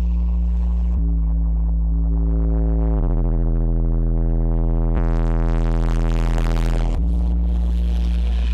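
Dark, droning electronic music from a live hardware set: heavy held bass tones under a stack of sustained notes that shift about every two seconds, with a hissing noise wash swelling in past the halfway point.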